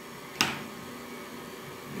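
Kenwood stand mixer running quietly on low speed, its beater working flour into a stiff dough in a stainless steel bowl. A single sharp click rings out about half a second in.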